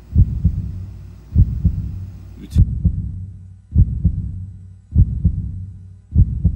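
Heartbeat sound effect: slow, steady double thumps (lub-dub), deep in pitch, a little more than once a second, over a faint low hum.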